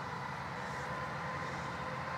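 Steady outdoor background noise, an even hiss with a faint steady hum underneath.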